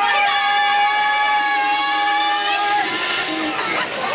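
A performer's voice, amplified through a headset microphone, holding one long, steady note for nearly three seconds before breaking off, with mixed voices and music around it.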